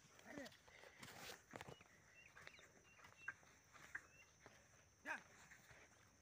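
Near silence with faint short chirps and a steady high whine, broken by a brief voice-like call about a third of a second in and another about five seconds in.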